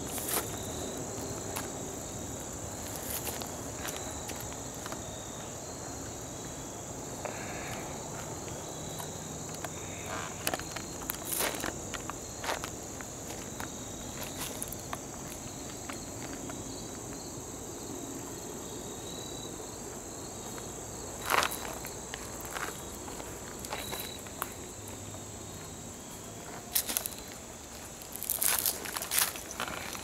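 Steady high-pitched insect chorus of crickets or katydids trilling in the woods, with scattered footsteps and sharp knocks on a dirt trail. The loudest knock comes about two-thirds of the way through and a cluster follows near the end.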